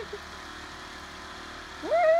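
A woman laughing in short bursts that stop just after the start, then a quiet stretch of low steady background noise. Near the end a loud 'woo' shout rises sharply in pitch and is held.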